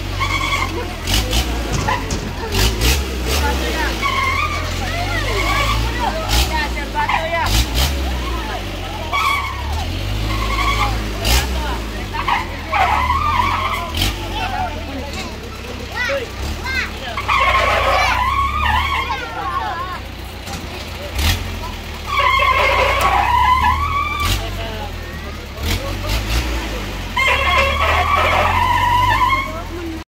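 Riders on a swinging pirate-ship fairground ride calling out and then screaming in three loud group bursts about five seconds apart in the second half, each one rising and falling in pitch. Under them runs a steady low rumble, with scattered sharp knocks and rattles from the ride.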